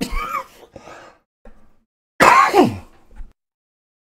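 A man's sudden non-speech vocal bursts: a short one at the start and a louder one about two seconds in whose pitch falls steeply, like a sneeze.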